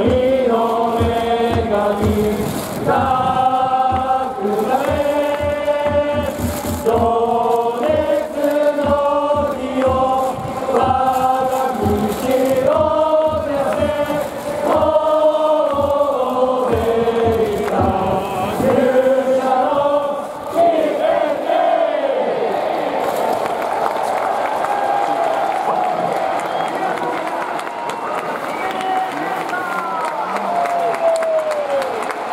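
A large stadium crowd of baseball fans singing a team song in unison to a steady beat. The song ends about two-thirds of the way in and gives way to crowd cheering.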